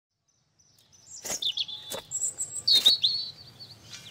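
Birds chirping and whistling in short, high-pitched calls, starting about a second in.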